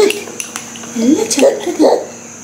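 A spoon clinking and scraping in a small ceramic bowl as baby food is scooped, a few light clinks. A woman's voice speaks in short phrases around them and is the loudest sound.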